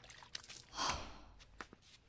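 A woman's single breathy sigh about a second in, with a few faint small clicks around it.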